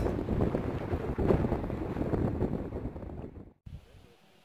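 Wind buffeting the microphone: a rough, low rumbling noise that fades steadily and cuts off shortly before the end.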